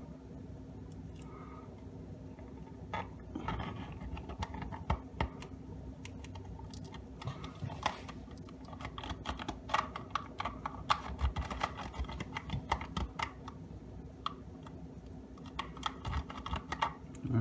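3D-printed PLA plastic parts clicking and tapping as the glued door catch is handled and pressed into place in the box: irregular light clicks, sparse at first and more frequent in the second half.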